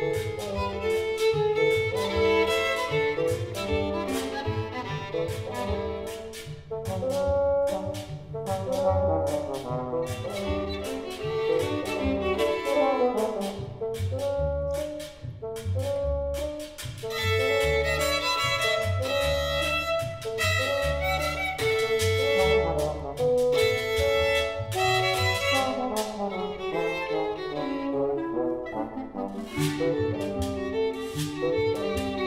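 Small chamber ensemble playing a jazz-inflected tune: violin over double bass, with trombone and other brass, and frequent drum and cymbal hits.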